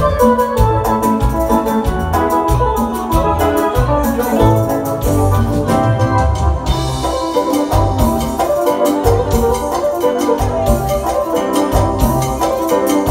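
Live grupera band playing an instrumental passage: an electronic organ keyboard lead over bass guitar and drums keeping a steady beat.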